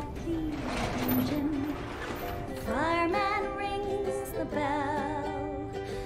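Music: a woman singing sustained notes with vibrato over plucked-string accompaniment, her voice coming in strongly about three seconds in.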